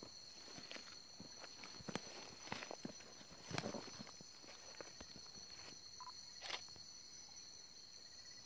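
Faint night-time insect chorus: a steady high trilling, with a short, higher chirp repeating about every second and a half. Over it, scattered rustles and crackles of leaves and footsteps in leaf litter.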